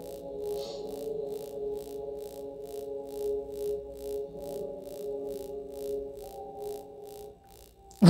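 Soft ambient electronic background score: held low chords under a steady, even pulse of about three beats a second, dropping away near the end.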